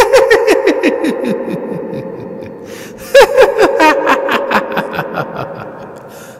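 Cackling laughter in two bursts about three seconds apart, each a quick run of short "ha" notes that falls in pitch.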